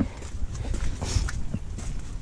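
Footsteps on a stone walkway: irregular hard steps over a low steady rumble.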